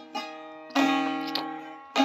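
Saz (bağlama) strings struck by hand: a light stroke at the start, then a stronger strum a little under a second in that rings on, and another stroke right at the end.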